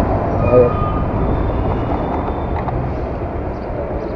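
Motorcycle engine running at low speed with street noise as the bike rolls slowly and comes to a stop.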